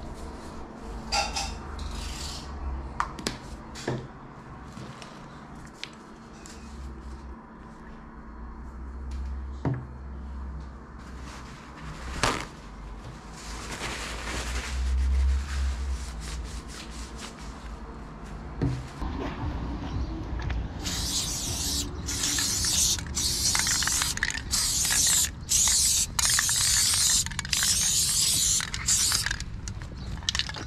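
Aerosol spray-paint can hissing in about ten short bursts as a black tag is sprayed, in the second half. Before that, small clicks and rustles of handling markers and ink bottles.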